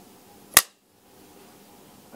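A single sharp click about half a second in, then a brief dead silence and faint room tone.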